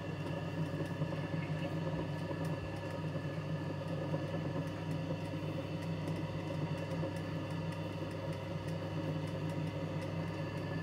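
Machine-embroidery machine running with a steady motor hum and faint scattered ticks.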